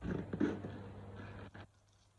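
Leather handbag being handled: rustling and rubbing, loudest about half a second in, with a short knock about one and a half seconds in.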